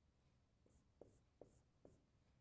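Faint taps and scratches of a marker on a whiteboard, drawing short hatching strokes at about two or three a second, starting a little over half a second in.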